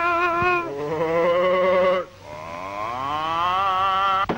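A cartoon character singing in a high, warbling voice: a few held notes with heavy vibrato, then one long note that slides steadily upward through the second half.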